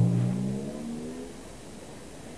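Cartoon sound effect for a collision: a low, booming, drum-like note dying away, its pitch bending slightly upward, and fading out about halfway through.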